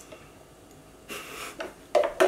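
A person drinking a thick smoothie through a straw: quiet sucking, then a short airy slurp about a second in, followed by a couple of brief breathy sounds.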